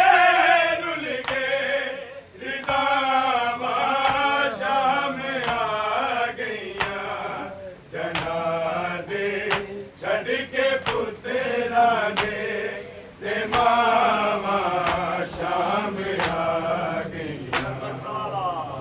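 A group of men chanting a Punjabi noha lament together in unison. Their voices waver and rise and fall through sung lines, with brief breaks between phrases.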